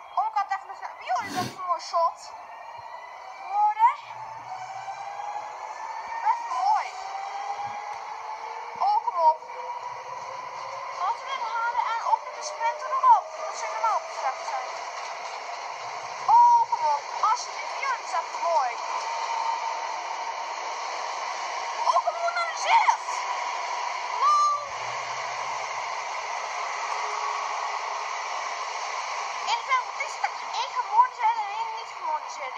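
Yellow NS double-deck electric train pulling out of the platform and gathering speed, its drive giving a whine that rises slowly in pitch. Short squeaks come over it every second or two.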